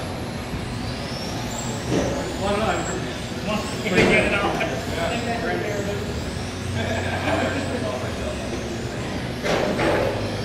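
Electric RC racing cars' motors whining around an indoor track, the pitch rising and falling with throttle as they accelerate and brake. Voices in the hall sound alongside.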